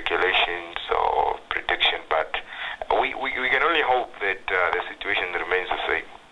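A man speaking over a telephone line, the voice thin and cut off above about 4 kHz.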